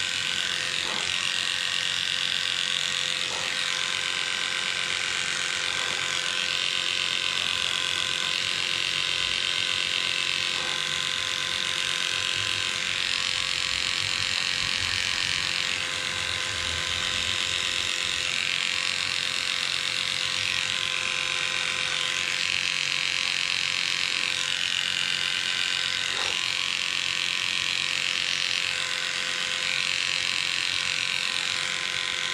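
Heiniger cordless dog clipper running steadily as it trims fur on the dog's paw, its buzz shifting up and down in pitch every second or two as the blade meets the hair.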